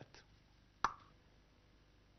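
A pause with low room tone, broken about a second in by a single short, sharp pop.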